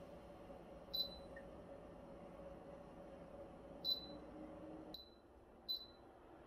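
DIDIOLAB cordless circulator-type fan beeping as its buttons are pressed: three short, high electronic beeps about a second, four seconds and nearly six seconds in, over a faint steady hum.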